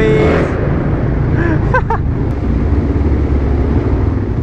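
Supermoto's single-cylinder engine running as the bike rides on, a steady low rumble throughout. A short laugh at the start and a brief voice partway through sit over it.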